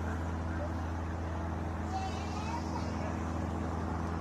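A steady low hum with faint, distant voices in the background.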